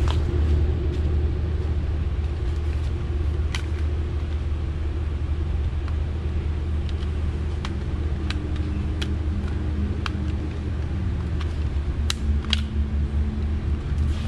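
Air handler blower running with a steady low hum, the HVAC unit on and moving return air. A few light plastic clicks from the thermostat being handled.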